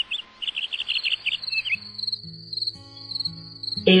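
Garden ambience: birds chirping in quick repeated phrases for the first couple of seconds, over an insect's steady high pulsing trill that carries on after the birds stop. Soft, sustained low music notes come in about halfway.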